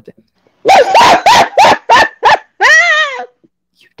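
A woman laughing loudly into a microphone: about six quick high-pitched bursts, then one longer, wavering laugh near the end.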